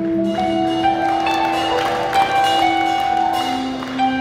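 Live band playing an instrumental passage without vocals: held melody notes that start sharply and ring on, several sounding together over a steady accompaniment.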